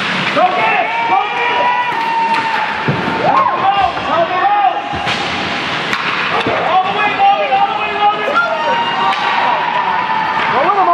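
Spectators in a hockey rink shouting and cheering, several raised voices overlapping with no clear words. A few sharp clacks of sticks and puck on the ice cut through.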